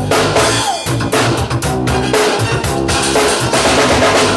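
A drum kit played along to a recorded pop song: bass drum, snare and cymbals keep a steady beat over the record's bass and melody, with a sliding tone about half a second in.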